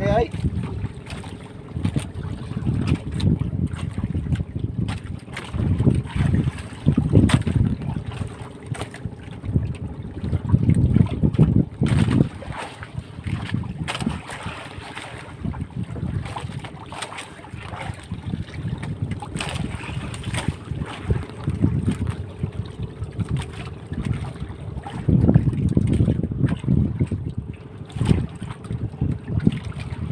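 Wind buffeting the microphone aboard a wooden outrigger boat at sea, in uneven gusts, with a faint steady hum underneath and scattered small knocks.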